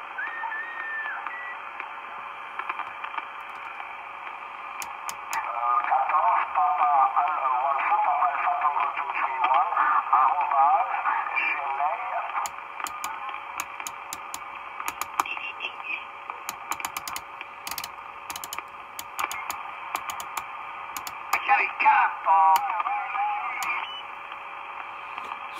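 Marko CB-747 CB radio receiving through its speaker: steady band hiss and a steady low tone, with distant stations' speech coming in garbled and warbling, loudest from about five to twelve seconds in and again near the end. Sharp clicks come through from about five seconds on as the channel selector knob is turned.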